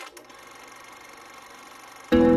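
A faint, steady mechanical whir that starts with a click.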